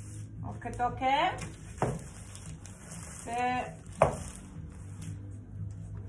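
A household clothes iron worked over plastic crisp packets on a table: a crinkly hiss, and two knocks of the iron, about two and four seconds in. A woman's voice sounds briefly twice without clear words.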